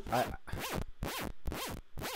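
OSCiLLOT modular synth patch (Max for Live in Ableton) playing a pulsing tone about twice a second, in quarter notes, each pulse a quick rise and fall in pitch from an LFO bending the oscillators' pitch. The three oscillators run through a wave shaper, which gives the sound a little more grit.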